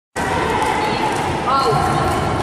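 Feet repeatedly landing on a wooden hall floor as several girls jump in place, with voices talking at the same time.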